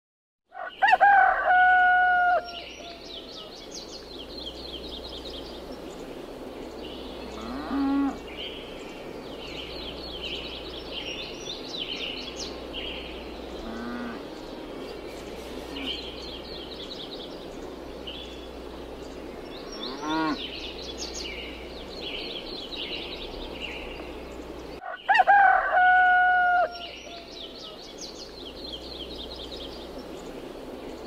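Farmyard ambience: a rooster crows loudly about a second in and again near the end, and cattle low briefly twice. Small birds chirp throughout over a steady low hum.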